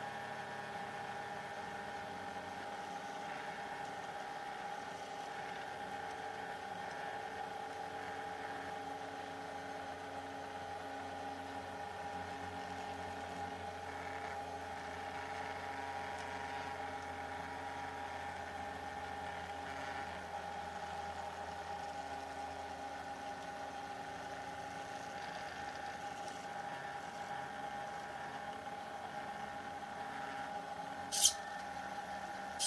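Stepper motors of a homemade sphere pen plotter whining steadily as they turn a Christmas bauble and move the pen while it draws, a hum of several held tones that shift a little now and then as the motors change speed.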